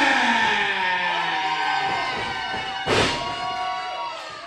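Ring announcer's voice drawing out the last syllable of a wrestler's name in one long held call that slowly sinks in pitch and fades. A single thump comes about three seconds in.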